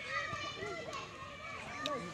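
Monkeys calling: many short, high, squeaky chirps with arching pitch, overlapping one another several times a second.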